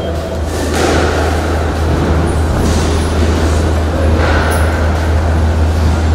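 A steady low hum under an even wash of room noise, with a few faint knocks.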